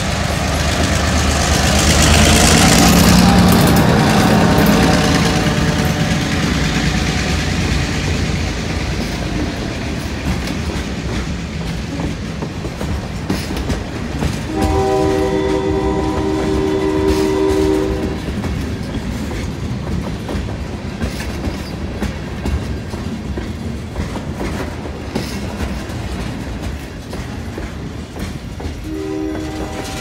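Diesel freight locomotive passing close by, its engine loudest in the first few seconds, then a string of tank cars and covered hoppers rolling past on steel wheels. The locomotive's horn sounds a steady blast of about three seconds near the middle, and another starts near the end.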